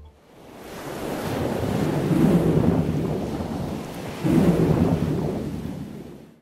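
Ocean surf breaking in two surges of rushing noise. The first builds up slowly; the second comes in suddenly about four seconds in, then fades away.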